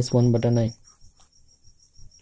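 A man's voice for under a second at the start, then faint light ticks of a pen writing on a spiral notebook. A steady high-pitched whine runs underneath throughout.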